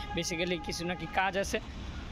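A man talking for about a second and a half over a low, steady street rumble, with a faint steady tone under his voice in the first second.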